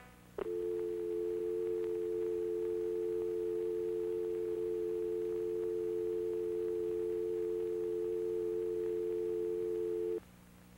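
Telephone dial tone: a click about half a second in, then a steady two-note hum from the handset, held without a break until it cuts off abruptly at the end.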